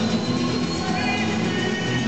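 Two acoustic guitars playing live in concert. A long, thin, high whistle-like tone slides up just before and holds for about a second over the chords.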